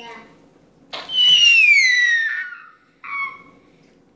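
Young child crying in a temper tantrum: one long, high wail that falls in pitch, starting about a second in, then a shorter cry near the end.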